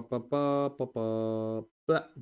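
A man's voice: a couple of short clipped syllables, then two long vocal notes held at one level pitch, like a drawn-out hum.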